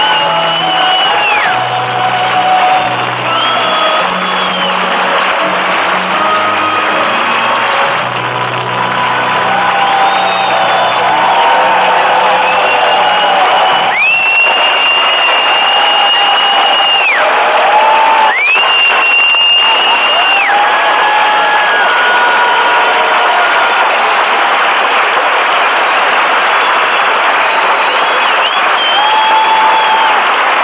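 A large concert audience applauding and cheering, with long shrill whistles held for two to three seconds each and shouts over the steady clapping. Low held notes sound underneath for the first several seconds, then die away.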